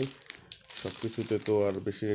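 Plastic packaging crinkling as a fishing rod is pulled out of its bag, mostly in the first half-second, with a man talking over it for the rest.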